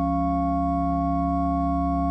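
Pipe organ holding a steady, sustained chord over a deep pedal note.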